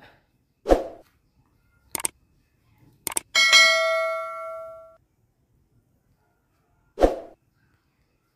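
A click and then a bell ding from a subscribe-button animation, the ding ringing out for about a second and a half. Around it come a few short knocks of hand tools against the planer's metal machine table.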